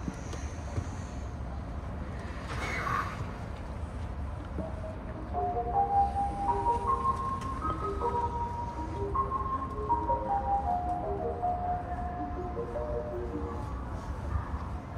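Station platform departure melody: a short electronic chime tune of stepped notes, starting about four and a half seconds in, over the steady low hum of a stopped electric commuter train. A brief hiss comes about three seconds in.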